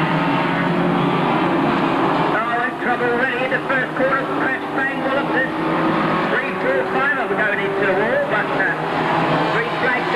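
A pack of banger racing cars' engines running together as they race round a bend, the engine notes rising and falling over a continuous din.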